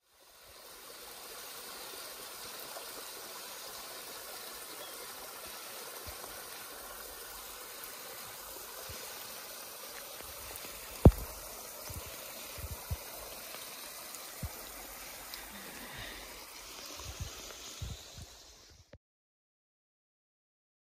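A small rain-fed trickle of water running over rocks and leaf litter, a steady flowing sound. A sharp knock about halfway through and a few softer knocks near the end.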